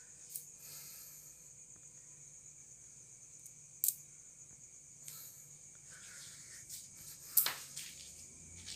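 A steady high-pitched trill of night insects, with a faint low hum beneath. Three sharp clicks or taps break in: about half a second in, near the middle, and the loudest shortly before the end.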